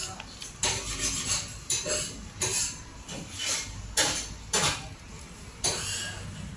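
Biting into and chewing a Chinese crepe held in a paper sleeve close to the microphone: a series of irregular crunches and crackles from the food and the paper wrapper.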